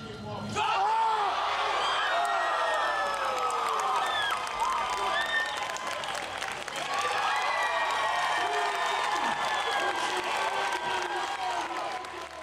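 Crowd shouting and cheering a lifter through a heavy competition barbell squat, many voices yelling at once with some applause. It surges in about half a second in and stays loud, dipping briefly near the middle.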